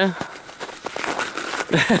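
Snow crunching, with scattered short crackles, between two shouts: a call trails off at the start and a "Whoa!" breaks in near the end.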